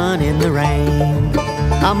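Bluegrass band playing a short instrumental fill between sung lines: banjo and acoustic guitar over upright bass. The lead voice comes back in right at the end.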